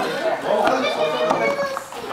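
Children and adults chattering over each other, with a couple of short clicks in the middle.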